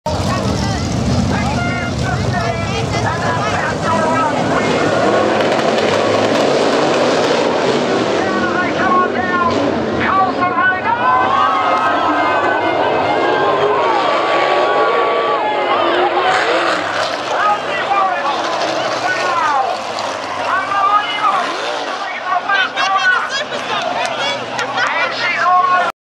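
Engines of open-wheel speedway race cars running as the pack races around a dirt oval, easing off after about eight seconds as the field slows for an incident, with people's voices talking over the engine noise for the rest of the stretch.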